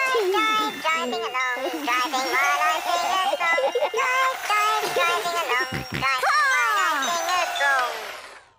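Cartoon battery-powered toy car playing a jingly electronic tune as it drives along. Near the end the tune slides down in pitch and fades, as the toy's flat batteries give out.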